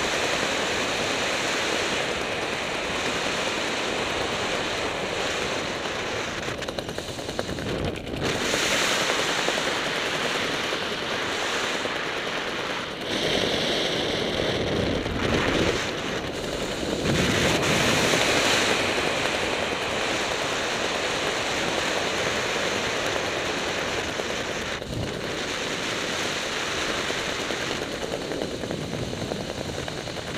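Wind rushing over the camera microphone of a skydiver descending under an open parachute canopy, a steady buffeting hiss that swells louder for a few seconds about a third of the way in and again around the middle.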